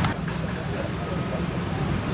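Steady low rumble of a vehicle engine running, with indistinct voices over it and a short click right at the start.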